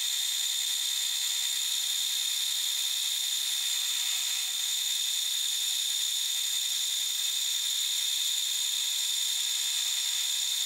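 Milling spindle of a lathe-mill combination machine running, its two-flute end mill cutting a flat across a block of white plastic: a steady, high-pitched whine.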